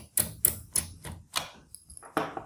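About half a dozen sharp, irregular clicks from hands working the screw and metal caddy in the hard-drive bay of an HP ProBook 6470b laptop.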